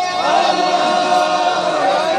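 A crowd of protesters chanting together in sustained, drawn-out voices, with the pitch bending up and down.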